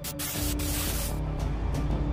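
A burst of harsh static hiss lasting about a second, a video-glitch sound effect, over dark horror soundtrack music with a low drone that carries on after the static stops.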